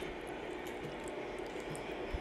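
Steady background hiss of room noise with a faint click at the start and a few faint ticks near the end.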